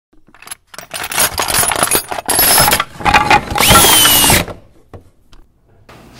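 Loud mechanical noise in several bursts that start and stop over about three and a half seconds. The last and loudest burst carries a whine that rises and then slowly falls.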